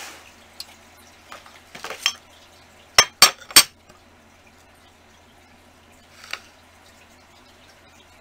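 Small hard items clinking on a glass work surface: three sharp clinks in quick succession about three seconds in, with a few fainter taps before and after.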